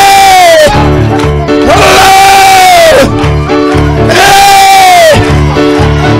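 Three long, loud held cries, each falling in pitch as it trails off, over a church band playing a steady driving beat with bass and guitar.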